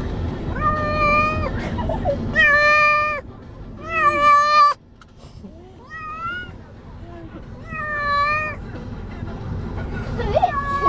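Domestic cat meowing in distress: five long, drawn-out meows spaced about two seconds apart.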